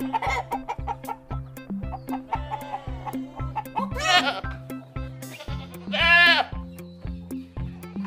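A goat bleating twice, about four and six seconds in, the second call louder, over background music with a steady beat.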